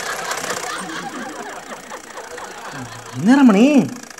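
Sewing machines running with a fast steady clatter and faint background voices, fading away over the first second or so. About three seconds in, a loud voice calls out.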